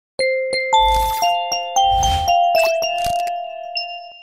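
Logo intro jingle: a quick run of about ten bell-like chime notes over three seconds, with two low swells beneath them near the start. The last notes ring on and fade.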